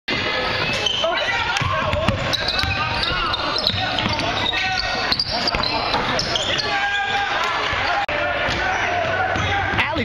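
Sounds of a basketball game in a gym: many voices of players and spectators calling out over one another, with a basketball bouncing and scattered sharp knocks echoing in the hall.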